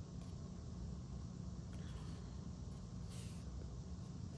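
Faint handling of paper and cardstock as a strip of pattern paper is slid into place, with a short soft rustle about three seconds in, over a steady low hum.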